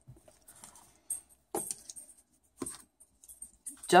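Metal key rings on homemade pacifier clips clinking against each other and the table as they are handled: a few scattered light clicks and rattles.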